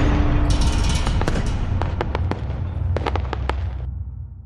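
Logo-intro sound effect: a deep, sustained rumble with scattered sharp crackling clicks like sparks, fading away near the end.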